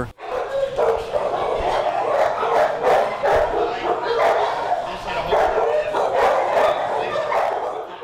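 Many dogs barking and yipping at once, a continuous overlapping din in a hard-walled kennel hall of chain-link runs, with people's voices underneath.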